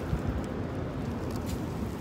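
Wind buffeting a handheld phone's microphone: a steady low rumble with a few faint clicks.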